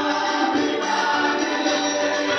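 A choir singing gospel music in long held notes.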